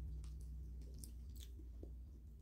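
Cooked shrimp shell being peeled by hand, giving a few sharp cracks and clicks, with quiet chewing. A steady low hum runs underneath.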